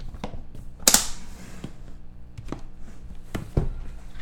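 Opening and handling a box of trading cards: a sharp click about a second in, then several lighter knocks and taps, ending in a dull thump.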